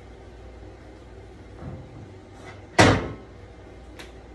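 A single sharp knock about three quarters of the way through, with a softer bump about a second before it, over a faint steady low hum.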